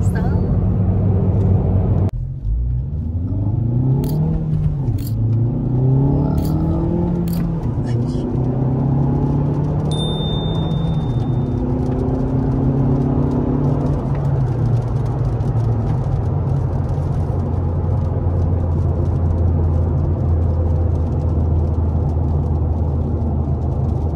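Hyundai Veloster Turbo's turbocharged four-cylinder engine heard from inside the cabin, pulling hard through the gears of its six-speed manual: the engine note rises and drops back at each shift a few times, then settles into a steady drone at cruising speed.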